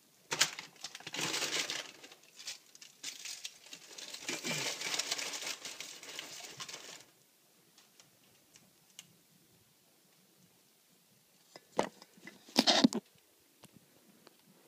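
Paper microwave-popcorn bag crinkling and rustling in bursts for several seconds, then a few sharp knocks near the end.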